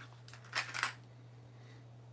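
Small metal parts clinking in a knife-parts kit as it is opened and searched: a quick cluster of light metallic clinks about half a second in, then only a faint steady hum.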